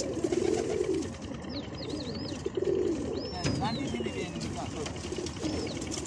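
Domestic fancy pigeons cooing, several low rounded coos in turn. A few thin high whistled calls from another bird slide in pitch behind them, one falling slowly a little past halfway.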